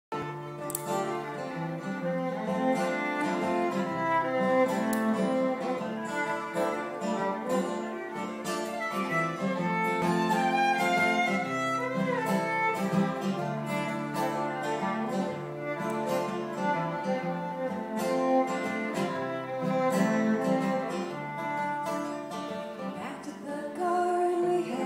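Fiddle and acoustic guitar playing a live instrumental introduction: a bowed fiddle melody over a steady guitar accompaniment.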